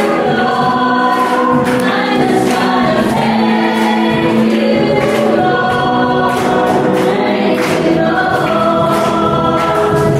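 A congregation singing a worship song together, with sharp percussion hits, such as a tambourine, scattered through the singing.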